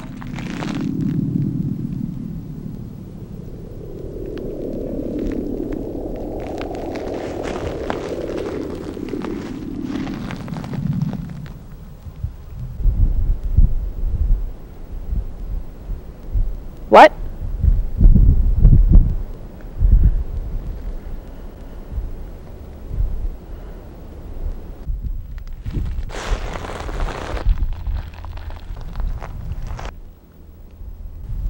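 A deep rumble that swells and fades over the first ten seconds, then a run of heavy low thuds, loudest in the middle, with one sharp crack among them. Near the end comes a short rustling whoosh.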